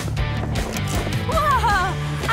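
Upbeat cartoon background music with a steady beat and bass line. In the second half a brief wavering, high-pitched sound plays over it.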